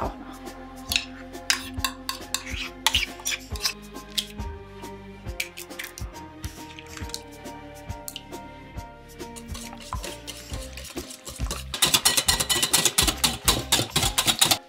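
Metal spoon tapping and scraping crème fraîche from a bowl into a glass mixing bowl, with scattered clicks. About two seconds before the end, a wire whisk starts beating the eggs and crème fraîche in the glass bowl: a fast, dense clatter. Background music plays under it.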